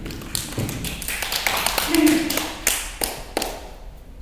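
Scattered applause from a small audience: a few pairs of hands clapping, thinning out near the end, with a brief voice in the middle.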